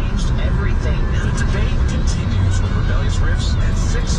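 Steady low rumble of road and tyre noise inside a car's cabin on a wet freeway, with faint, indistinct voices underneath and scattered light ticks of rain.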